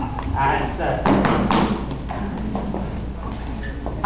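Dancers' shoes thudding and tapping on a hard hall floor as couples step and turn, a scattering of irregular knocks with people talking over them.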